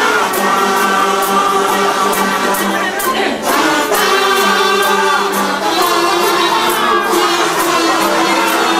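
A group of kazoos buzzing a tune together in unison, over a strummed ukulele and some singing, with a brief break about three seconds in.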